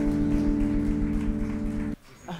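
A jazz band of tenor sax, electric guitar, keyboards, bass and drums holding a sustained closing chord, which cuts off suddenly near the end.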